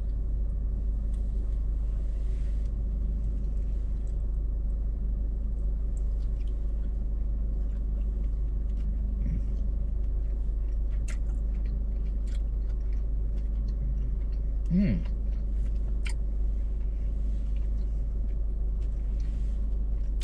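Steady low rumble of a car heard from inside its cabin while it sits stopped, most likely the engine idling, with faint light clicks scattered through it.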